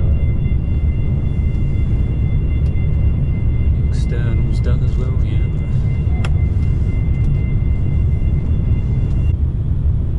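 Steady low rumble on a ferry's vehicle deck as the internal hatch swings open, with a steady high whine that cuts off near the end. A brief voice is heard about four seconds in, and a single click a little later.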